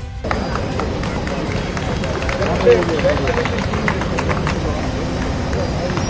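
Outdoor ceremony ambience: a crowd's indistinct voices and a car driving past, with music underneath.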